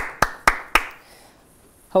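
One person clapping: four sharp hand claps in the first second, then the clapping stops.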